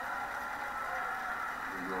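Steady background noise of a television broadcast of an indoor arena, heard through a TV speaker, with a man commentating starting near the end.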